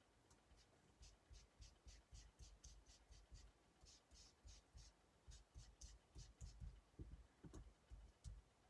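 Faint, quick dabbing of a foam ink dauber onto a metal die over cardstock, about three soft strokes a second.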